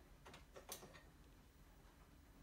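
A few faint clicks in the first second as a dough hook is unclipped from a KitchenAid stand mixer's attachment shaft.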